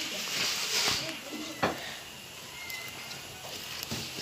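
Wood fire burning in the firebox of a wood-fired stove: a hiss in the first second, then faint scattered crackles, with one sharp click about a second and a half in.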